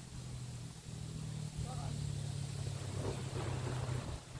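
A golden retriever leaps from the bank into a pond with a splash about three seconds in, to swim out for a retrieve. Under it runs a steady low motor hum.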